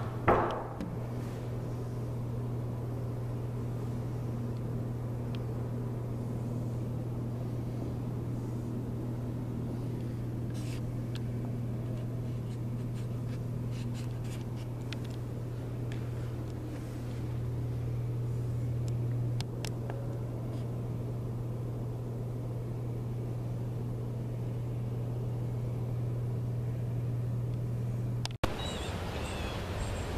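Steady low-pitched hum of indoor room tone, with a short louder noise at the very start. It cuts off abruptly near the end, where faint outdoor ambience begins.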